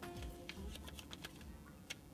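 Small folded paper slip being unfolded by hand: faint crinkling with a scatter of light, sharp ticks, the sharpest one just before the end.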